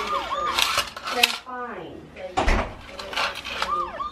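Electronic siren of a toy police car wailing in short repeating cycles, heard at the start and again near the end. In between, the plastic toy clatters on a tile floor, with one dull thump about halfway.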